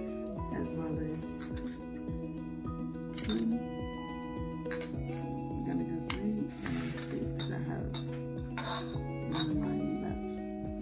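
Glass candle jars clinking several times as they are handled and set on the table, over background music.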